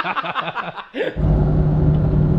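A man's voice and laughter for about a second. Then, after a cut, the cab of the Maverick on the road: its 5.0-litre V8 conversion runs at a steady cruise with a constant low engine drone and road rumble.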